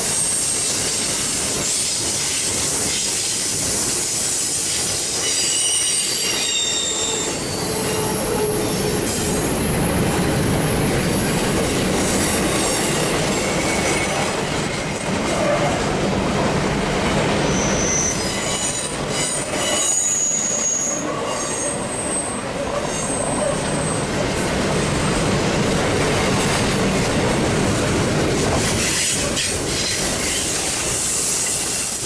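Double-stack container train's well cars rolling past on curved track: a steady rumble of steel wheels on rail. High-pitched wheel squeal comes and goes over it, strongest about a quarter of the way in and again a little past the middle.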